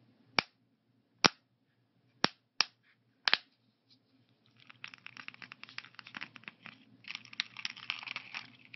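Snap lids of a plastic weekly pill organizer clicking under the thumbs, five sharp clicks spread over the first three and a half seconds. From about four and a half seconds in, a quick, uneven run of light ticks and scratches as fingernails tap and scrape across the plastic lids.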